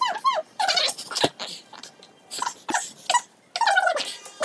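Character voices sped up to nearly three times normal speed, very high-pitched and squeaky, in quick bursts with short gaps. Two sharp clicks fall about a second in and near the middle.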